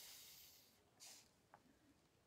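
Near silence: a faint hiss fading out in the first half second, then a brief soft scuff about a second in.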